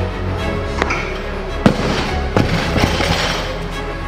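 A 140 kg barbell with bumper plates dropped from overhead onto the lifting platform: one loud slam about a second and a half in, then a couple of smaller bounces, over background music.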